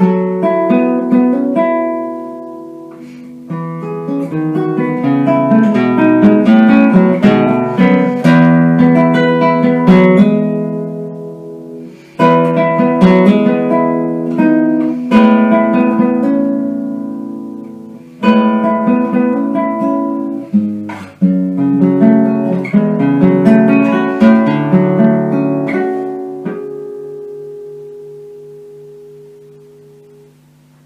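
Solo classical guitar played fingerstyle: plucked melodic phrases over ringing bass notes, with brief pauses where the notes die away. Near the end a final chord rings out and slowly fades.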